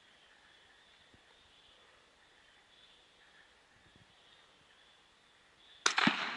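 Quiet night background with a faint steady high hiss, then near the end a single rifle shot: one sharp crack with a short ringing tail.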